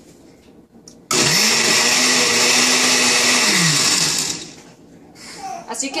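Countertop blender run in a single pulse of about three seconds, chopping tomatillos, cilantro and serrano chili into salsa. The motor starts abruptly with a quick rise in pitch, runs steadily, then winds down as the button is released.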